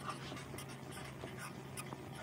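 Felt-tip marker pen scratching on paper in short, faint strokes as words are written by hand, over a low steady hum.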